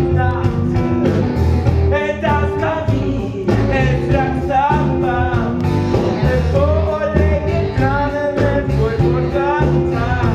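A stage-musical song: voices singing a melody over an instrumental backing with a steady bass line.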